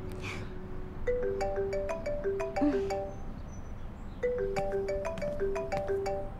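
Mobile phone ringtone: a short marimba-like melody of quick notes that starts about a second in and repeats about three seconds later, the phone ringing with an incoming call.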